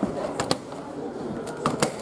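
The door of a Haier front-loading washing machine being handled and pushed shut, giving sharp clicks: a pair about half a second in and another pair near the end.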